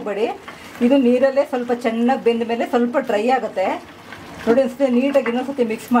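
A woman talking, with a wooden spatula stirring chicken as it fries in a pan under her voice, giving faint scraping and sizzling.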